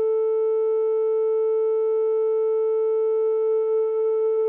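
A single steady electronic tone, mid-pitched with faint overtones, held without change at the opening of a downtempo track.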